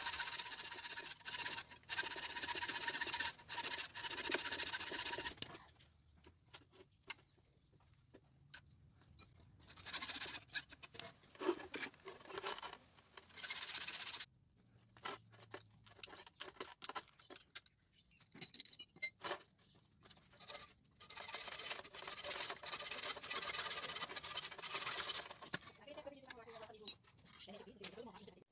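Hacksaw cutting through a steel wire set in concrete: rasping back-and-forth strokes in three spells, with pauses between them.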